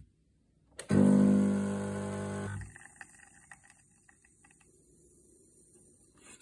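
Espresso machine pump running with a loud steady hum for about two seconds, then cutting out, as a shot is pulled into a small cup. After it stops there is a faint low hum with a few light ticks.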